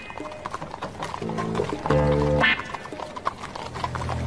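A horse's hooves clip-clopping as it pulls a carriage, with the horse neighing once from about one to two and a half seconds in, over background music.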